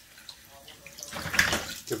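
Tap water running into a stainless steel sink and splashing over a toheroa shell and the hands holding it. It swells about a second in.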